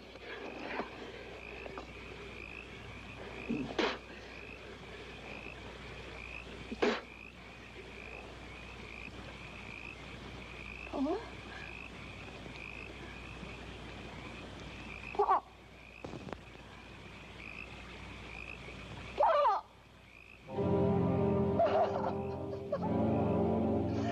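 Night frog chorus: a steady, pulsing high trill with single louder croaks every few seconds. Orchestral film music swells in near the end.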